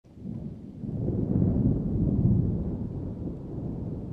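A deep, thunder-like rumble that swells over the first second and a half and then slowly ebbs.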